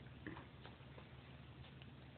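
Near silence: room tone with a steady low hum and a few faint, short ticks.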